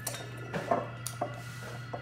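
A handful of light clinks and knocks, about six spread over two seconds, as a metal bar spoon and glass liquor bottles are picked up and handled on a stone countertop while a layered shot is being made.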